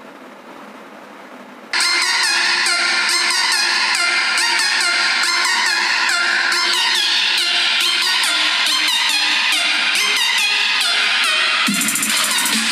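Music playing through an Ubon SP70 Bluetooth soundbar, starting suddenly about two seconds in after a short stretch of faint hiss. Near the end a heavier low beat comes in.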